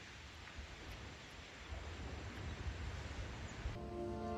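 Faint outdoor background with a low, uneven rumble. Music with long held tones comes in near the end.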